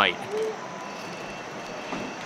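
Steady background noise of a dining room, with a short hummed 'mm' from the diner about half a second in.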